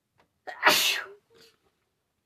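A woman sneezes once: a short breath in about half a second in, then a single loud sneeze.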